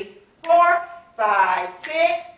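Speech only: a woman calling out short dance counts in rhythm, three clipped words about two-thirds of a second apart.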